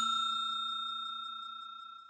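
Bell-like chime sound effect of a subscribe-and-notification animation: a clear, pure ringing tone, struck just before, fading away steadily.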